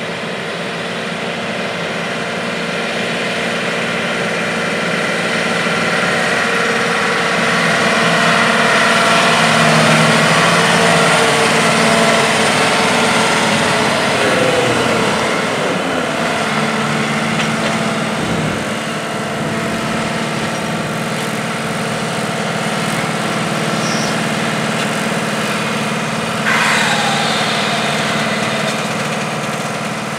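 John Deere R4045 self-propelled sprayer's 9-litre PowerTech diesel engine running as the machine drives past, growing louder as it approaches and dropping in pitch as it goes by. Near the end a short high whine falls in pitch.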